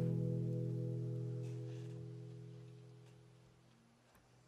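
The song's last chord, led by guitar, ringing out and dying away over about three and a half seconds until it is gone near the end.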